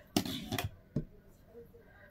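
Hands handling yarn on a small wooden frame loom: a short soft rustle, then a single light tap about a second in.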